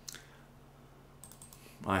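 A single sharp click just after the start, then a quick cluster of clicks about a second and a quarter in, from a computer mouse being clicked to open a folder. A faint steady low hum lies underneath.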